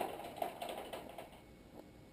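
Felting needle stabbing repeatedly into wool felt, a quick run of small taps for about a second and a half that then dies away.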